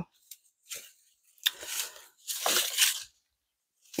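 Strips of dot-matrix printer tear-off paper rustling as they are picked up and handled, in three short bursts.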